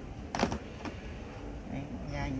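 Sharp clicks of small plastic parts being handled: one loud click about half a second in and a fainter one shortly after.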